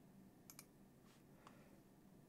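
A few faint computer mouse clicks over near silence: two close together about half a second in and one more about a second and a half in.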